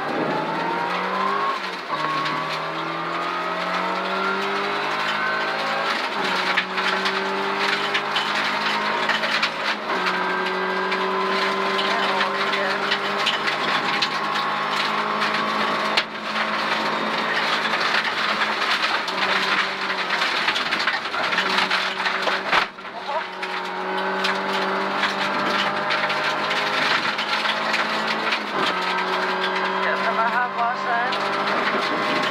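Rally car engine heard from inside the cabin, pulling hard through the gears at full throttle: its note climbs and then drops at each gear change, several times over, with a brief lift-off about two-thirds of the way in.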